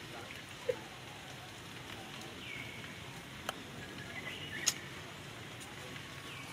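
Outdoor ambience: a steady low background noise with a few short, high chirps and two sharp clicks, the louder click near the end.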